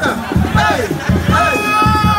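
Simpa dance music with regular drum beats, under loud crowd voices shouting. In the second half one long high note is held over the drums.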